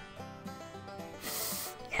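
Quiet background music, with a single short, breathy sniff lasting about half a second a little past a second in.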